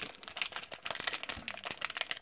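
Plastic blind-bag packet crinkling in the hands as a small toy is taken out, a run of quick irregular crackles.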